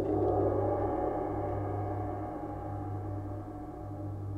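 Sabian Turkish tam-tam struck once at the start, its dense shimmering wash of tone slowly fading over a low, pulsing hum.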